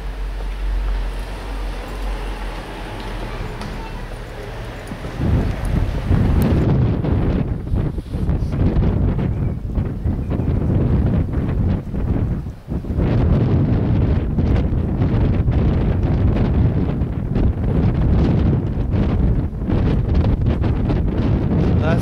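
Wind buffeting the camcorder microphone: a rough, heavy rumble that comes in about five seconds in and carries on, over a quieter outdoor hiss before it.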